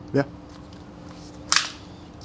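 A single short, sharp metallic clack from the Archon Type B polymer pistol being handled, about one and a half seconds in, over a steady low hum.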